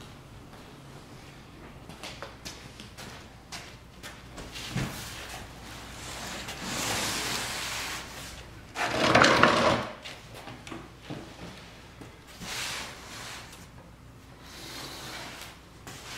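A cardboard shipping box being opened and handled: tape pulled, cardboard rustling and scraping, and a few light knocks, with the loudest burst of noise about nine seconds in.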